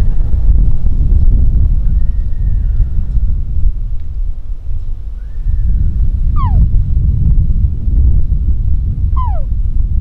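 Wind rumbling on the microphone, with high whistled calls over it: a long, slightly falling whistle about two seconds in and a short arched one around five seconds. Then come two sharp whistles that drop steeply in pitch, about three seconds apart, near the middle and near the end.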